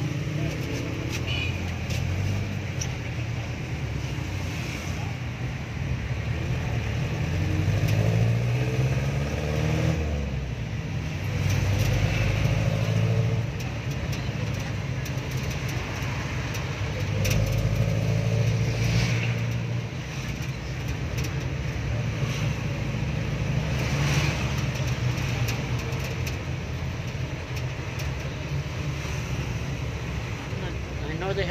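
Jeepney engine running, heard from inside the open-sided passenger cab as it drives through town. It revs up with a rising pitch about eight seconds in, drops back near ten seconds, then pulls steadily, with road and traffic noise around it.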